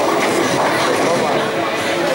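Bowling ball rolling down the lane with a steady rumble, over the chatter of the bowling alley.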